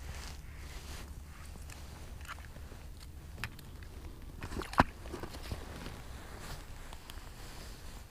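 Handling noises as a yellow bass is pulled up through a hole in the ice: scattered light clicks and crunches, with one sharp knock just before five seconds in, over a low steady rumble.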